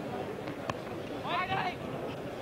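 Cricket ground crowd murmur, broken by a single sharp crack of bat on ball under a second in, followed by a brief high-pitched shout across the field.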